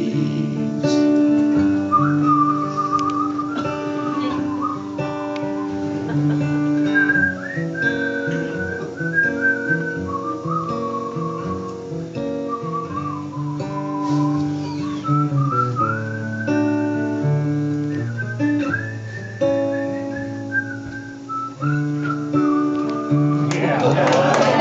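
A whistled melody over acoustic guitar. The guitar plays chords and bass notes throughout. The whistling comes in about two seconds in, carries the tune with a slight waver, and stops just before the end.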